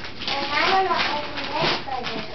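Small children babbling and squealing without words, with paper rustling and tearing as presents are unwrapped.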